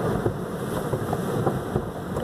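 Automatic car wash working over a car, heard from inside the cabin: a steady rushing noise of water and wash equipment against the body and glass, with a few faint knocks.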